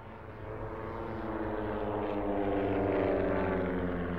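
Propeller airplane fly-by sound effect. A droning engine swells in, is loudest about three seconds in, then dips slightly in pitch as it passes.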